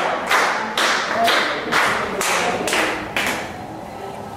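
A group of people clapping hands in unison to a steady beat, about two claps a second, stopping a little after three seconds in.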